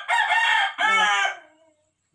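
A green parakeet giving two loud, harsh squawks, one right after the other, in the first second and a half.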